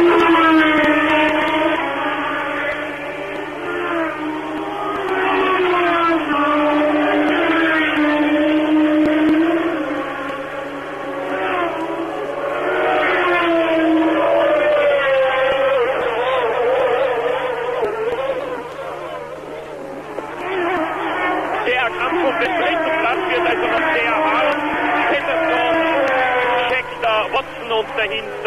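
Formula One racing car engines at high revs, their pitch climbing through the gears and dropping at each upshift and as cars go by. In the second half several cars are heard together.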